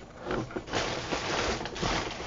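Rustling and handling noise as items that fell out of a shipping box are picked up from the floor, uneven and scratchy, with a few soft knocks.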